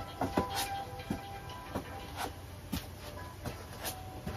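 Feet tapping on a carpeted floor and yoga mat during plank toe taps: short soft taps, roughly one every half second to second, over faint background music.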